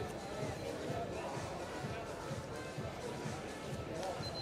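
Steady background of indistinct voices with music underneath, with no distinct impact or other single event standing out.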